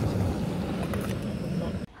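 Water at a rolling boil in an aluminium camping pot on a gas canister stove, with the burner running steadily underneath. The sound is a steady noise with a low rumble, and it cuts off abruptly near the end.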